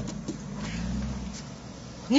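Low rumble of road traffic that swells and fades as a vehicle passes about a second in, heard through an open car door.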